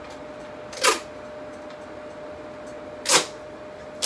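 Tape ripped off a roll twice in short, sharp rips, about two seconds apart. A steady faint hum runs underneath.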